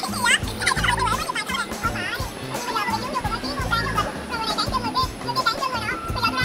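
Young women laughing and talking excitedly over each other, over background music with a steady bass beat.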